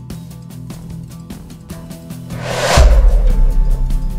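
Background music with a steady beat. A little past halfway a rising whoosh swells into a loud, deep boom, a sound effect marking a screen transition, and the boom rings on.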